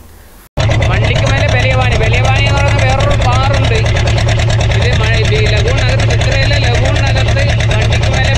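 A boat engine running steadily with a fast even pulse and a strong low hum, starting abruptly about half a second in, with people's voices over it.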